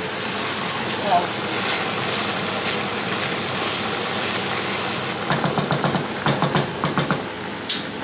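Stir-fried minced pork with basil sizzling in a hot frying pan as a wooden spoon stirs it, a steady crackling hiss; about five seconds in, a low murmuring voice joins.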